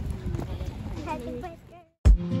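Footsteps of people walking on a gravel path, with voices of passers-by talking. The sound fades out near the end.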